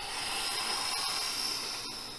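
A steady hiss, fading away after about two seconds.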